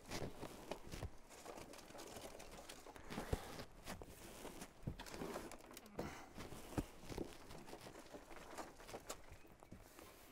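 Hands scooping and pressing loose compost into plastic root trainer cells: soft, irregular rustling and crumbling with scattered light knocks, the sharpest a little after three seconds and near seven seconds.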